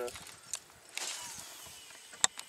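A cast with a baitcasting rod and reel: a click, then about a second in a sudden rush as the rod swings and line runs off the free-spooling reel, fading away over about a second.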